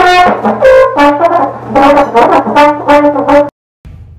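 Solo trombone playing a quick jazz phrase of short, separate notes, cut off abruptly about three and a half seconds in. The conductor judges the playing to be dragging just a hair behind the tempo.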